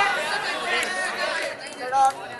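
Several voices shouting and calling over one another, with crowd chatter behind, during a run in a tape-ball cricket match; loudest at the start, with another shout near the end.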